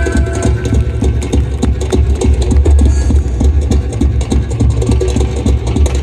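Live band music with a heavy, throbbing low bass and quick, dense percussion hits; sustained high held notes fade out just after the start.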